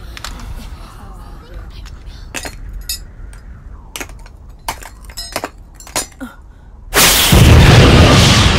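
Anime sword-technique sound effect. A few sharp clacks sound over a low background, then about seven seconds in a sudden loud rushing blast of wind sets in and keeps blowing: the Windcutter sword-wind whirling around the swordswoman.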